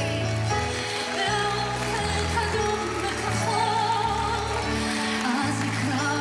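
A woman singing a slow song live over instrumental accompaniment, with long held bass notes that change every second or so.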